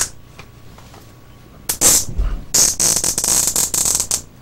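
Plastic flex cuffs being ratcheted tight around a person's wrists: a sharp click, then a short rasping zip and a longer one of about a second and a half.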